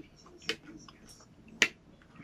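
Metal spoon clinking twice against a bowl while scooping up cold soup, the second clink sharper and louder.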